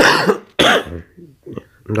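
A man coughs twice in quick succession, two short harsh bursts about half a second apart. Speech resumes near the end.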